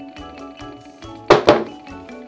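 A large two-by-four-foot sheet of MDF set down flat on a wooden workbench: two loud knocks about a fifth of a second apart, over background music with a steady beat.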